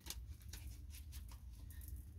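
A deck of cards being shuffled by hand, a quick run of soft, irregular clicks as the cards slide and tap together.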